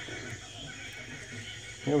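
Faint steady room noise with no distinct sound events, then a man starts speaking near the end.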